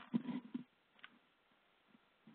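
Faint crackling and handling noise from a telephone line as the handset is being switched, then near silence with a single small click about a second in.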